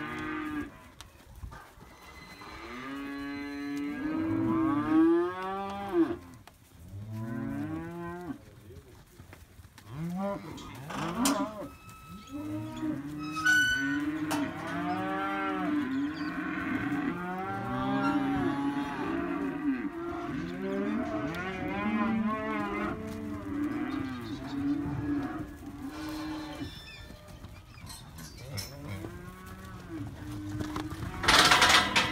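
A yard of young cattle mooing, many calls overlapping almost without a break, each call rising and falling in pitch, with a few sharp knocks in the middle.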